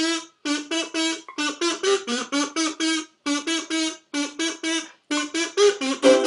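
A kazoo playing a bouncy melody in short, detached notes, phrase after phrase with brief breaks between them.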